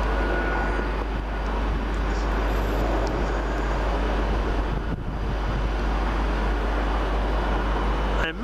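Steady vehicle noise with a heavy low wind rumble on the microphone, as a Northern Rail class 323 electric multiple unit approaches from a distance.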